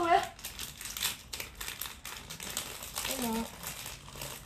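Long hair and fingers brushing over a phone's microphone: a dense, scratchy crackling rustle.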